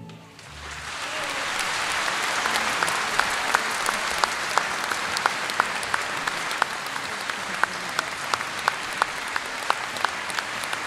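Concert hall audience applauding, swelling up over the first couple of seconds and then holding steady, with single sharp claps standing out about three times a second.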